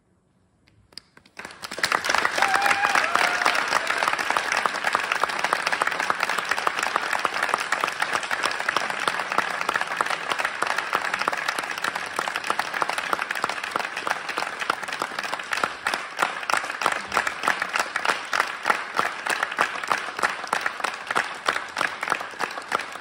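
Concert audience applauding: the clapping breaks out about a second and a half in, right after the last note has died away, with a brief cheer early in the applause, and carries on steadily, the individual claps standing out more near the end.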